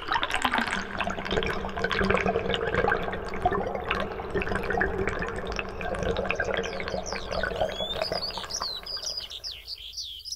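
Water running and bubbling, like a stream, with a steady low hum beneath it. Birds chirp high and quick over it in the last couple of seconds.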